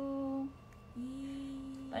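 A woman's voice humming two long, level notes: the first drawn out and ending about half a second in, the second starting about a second in and held until near the end.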